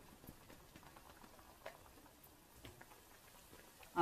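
Faint crackle of namakpara dough pieces frying in ghee over a low flame, with a few soft scattered pops.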